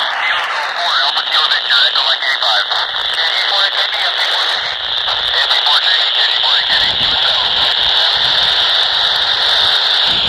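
AO-91 amateur radio satellite FM downlink playing through a radio's speaker: amateur operators' voices broken up by a steady static hiss.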